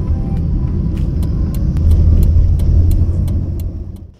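Low, steady road and engine rumble heard inside a moving car, swelling a little past the middle and fading out near the end. Faint regular ticks, about three a second, run through the second half.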